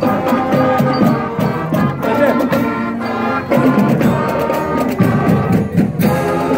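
School marching band playing while marching: saxophones, trumpets and sousaphones holding a tune over a drumline's steady beat.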